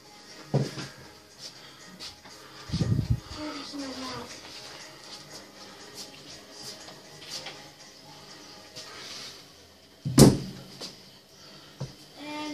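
Dumbbells knocking heavily against a tiled floor as they are picked up and set down: three thuds, the loudest about ten seconds in, over faint workout music.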